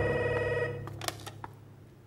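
Desk telephone ringing with a steady electronic tone that stops a little under a second in, followed by a couple of sharp clicks as the handset is picked up.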